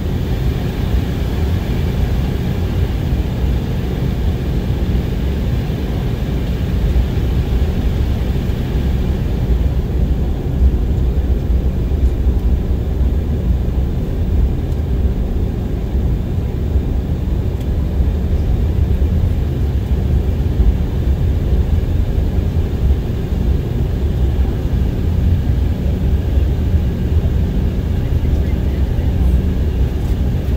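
Cabin noise of an Embraer 190SR taxiing after landing: a steady low rumble from its GE CF34-10E turbofan engines at low taxi power, together with the drone of the airframe rolling along the taxiway, heard from inside the cabin beside the engine.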